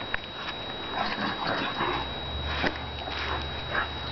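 Dogs playing rough together, with breathy snuffling noises and scuffling. A low steady rumble comes in about halfway through.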